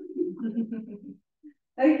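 A woman laughing softly in short, low breaths for about a second, trailing off before she speaks again.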